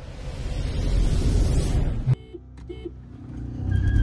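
A rushing noise swells for about two seconds and cuts off sharply, followed by two short beeps. Then a car engine builds under hard acceleration, heard from inside the cabin at a drag-race launch.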